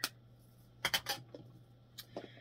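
A few light clicks and clacks of plastic makeup compacts being picked up and handled, with a quick cluster of three or four about a second in.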